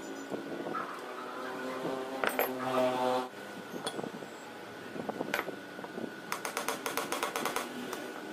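Metal clicks and knocks as a starter motor's housing and parts are handled and fitted together on a workbench. It ends in a quick run of sharp clicks a little over six seconds in. A brief humming tone with overtones sounds about two seconds in, over a steady faint high whine in the background.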